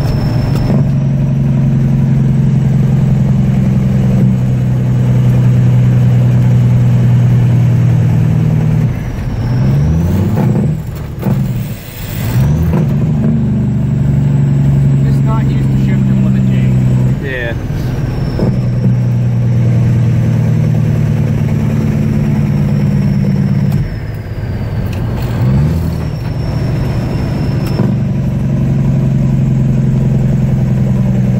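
1977 Peterbilt 359's diesel engine heard from inside the cab, running steadily under load. Twice, about ten seconds in and again near twenty-five seconds, the engine note drops and climbs back up, as with gear changes.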